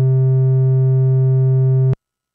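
A steady low synthesizer note with many overtones, held at one pitch and then cut off abruptly near the end. It is a long gate from the Bastl Neo Trinity's gate-length envelope mode holding the patch's VCA open, then closing it.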